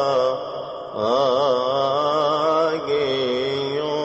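Coptic Orthodox liturgical chant, sung in long ornamented melismas that waver and glide in pitch. It breaks off briefly for a breath just after the start and takes up again about a second in.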